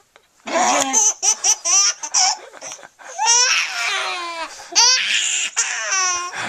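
Baby laughing hard, starting about half a second in, in repeated bursts of high-pitched laughs with quick runs of ha-ha pulses.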